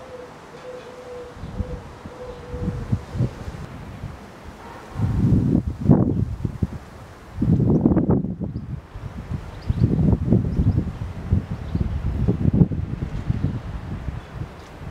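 Wind buffeting the microphone outdoors: a low rumble that surges and fades in gusts about every two seconds, starting about five seconds in. Before the gusts there is only a faint steady tone.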